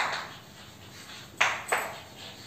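Chalk writing on a blackboard: three short, sharp taps and strokes, one right at the start and two close together about a second and a half in.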